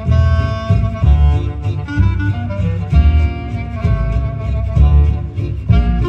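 Gypsy jazz quartet playing a jazz waltz live: a clarinet carries the melody in long held notes over strummed acoustic guitars and a double bass pulsing about once a second.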